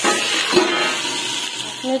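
Okra with potato and tomato sizzling as it fries in a steel wok, with a single knock about half a second in.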